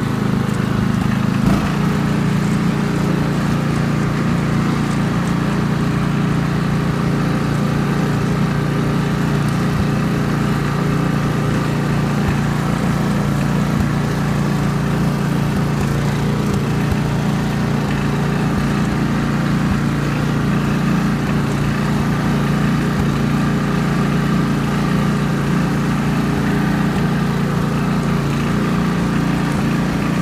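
Ride-on lawn mower's engine running steadily while the mower is driven across grass, a continuous drone with a slight change in tone about a second and a half in.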